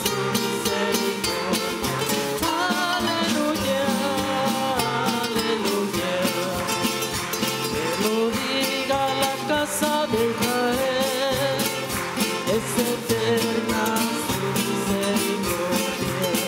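Church music group performing the closing hymn: voices singing over strummed guitars with a steady percussion beat.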